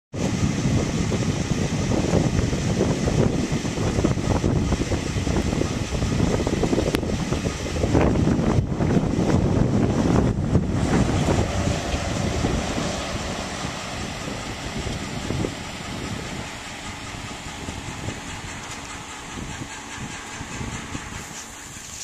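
Loud road and wind noise from a car being driven, heaviest in the low end and uneven, with gusts hitting the microphone. It grows quieter over the second half.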